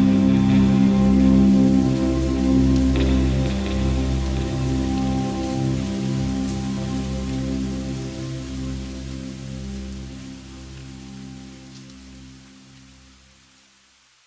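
Downtempo electronic chill track with sustained synth chords over a steady rain-like hiss, fading out gradually to near silence by the end.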